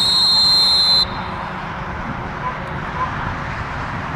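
Referee's whistle blown once, a steady shrill tone lasting about a second that cuts off sharply, signalling the play dead after a tackle.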